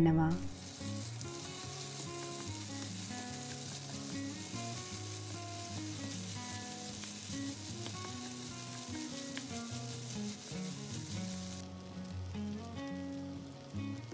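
Macaroni, bell pepper and sausage sizzling in a frying pan as they are stirred with a wooden spatula. The sizzle cuts off abruptly about twelve seconds in, with soft background music throughout.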